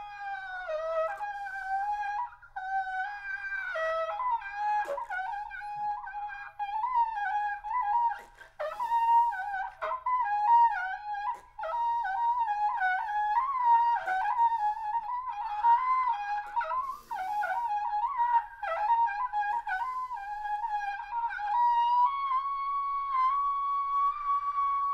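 Unaccompanied trumpet playing a single, freely phrased melodic line in its high register, moving in short stepwise runs with brief breathy, airy moments. Near the end it settles on one long held note.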